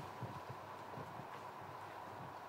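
Irregular soft knocks and taps, several a second, over a steady electrical hum of room noise.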